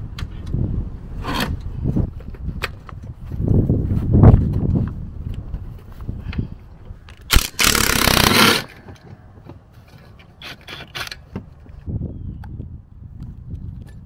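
Scraping, clinking and knocking of a wrench and socket working a rusty seat-bracket bolt. About seven seconds in, a DeWalt 20V cordless impact runs in one loud burst of just over a second, spinning the 13 mm bolt loose. A few light clicks of handling follow.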